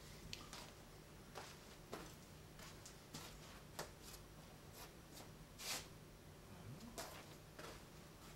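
Near-silent room tone with a low steady hum and a few faint scattered clicks and rustles, the loudest about halfway through.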